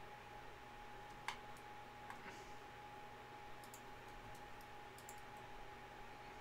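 A few faint computer mouse clicks over quiet room tone, the clearest about a second in. A faint steady tone runs underneath.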